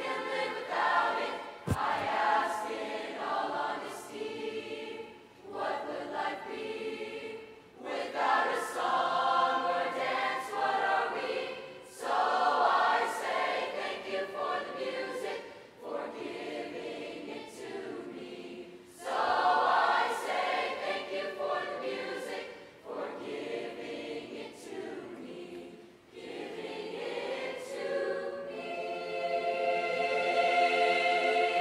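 Mixed youth choir of girls' and boys' voices singing in sustained phrases, with short breaks between phrases every few seconds.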